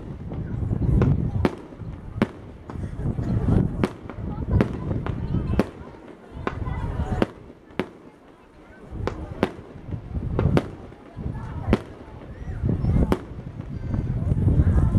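A fireworks display: sharp bangs of bursting shells, about one a second at irregular intervals, with a lower rumble swelling and fading between them.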